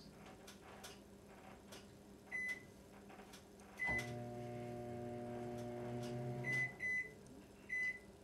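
Microwave oven keypad beeping as buttons are pressed, then the oven starts and runs with a steady hum for under three seconds before stopping with more beeps. Faint taps on the keypad come between the beeps.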